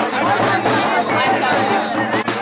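A crowd of spectators talking and calling out over one another in a dense babble, with a steady low hum underneath.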